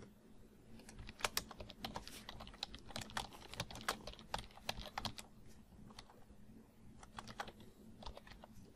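Typing on a computer keyboard: a faint run of quick keystrokes that pauses about five and a half seconds in, then a few more keys near the end.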